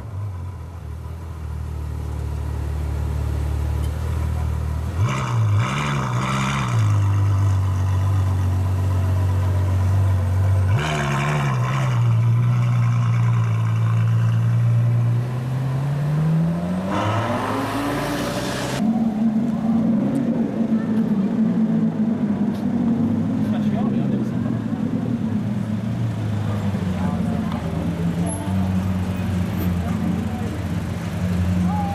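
Ferrari F12berlinetta's V12 idling, blipped twice, then revving up as the car pulls away and running on at a steady light throttle.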